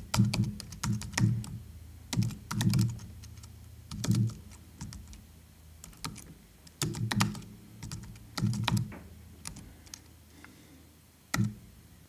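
Typing on a computer keyboard: short bursts of key clicks with pauses between them. The typing goes quieter and sparser toward the end.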